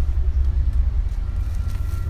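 Outdoor city-street ambience: a steady, loud low rumble on the microphone.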